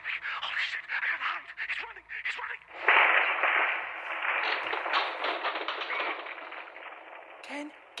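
A caller's broken voice over a telephone line, then a sudden loud burst of harsh, crackling noise through the phone about three seconds in, fading away over the next four seconds.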